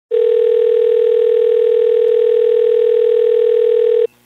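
Telephone dial tone: one steady, unbroken tone that cuts off suddenly at the end.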